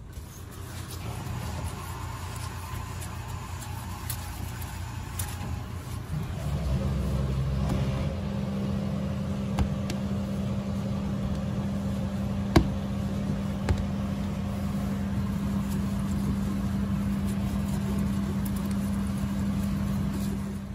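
A motor vehicle engine running steadily. A low hum sets in and grows louder about six seconds in, and two sharp clicks come about halfway through.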